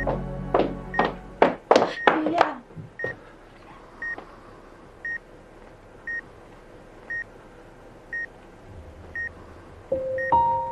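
Bedside patient monitor beeping about once a second, one short high beep per heartbeat. A quick run of sharp, louder sounds comes in the first two and a half seconds.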